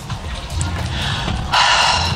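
Background music with a steady bass line. Over it a person breathes out: a faint breath about a second in, then a louder, breathy sigh of about half a second near the end, as she settles back to feign a nap.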